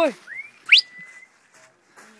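A person whistling to call a dog: a short rising whistle, then a quick, steep upward whistle that ends in a brief held note.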